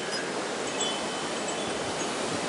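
Steady outdoor background hiss picked up by a camera's built-in microphone, with a few faint, brief, high tinkling tones scattered through it.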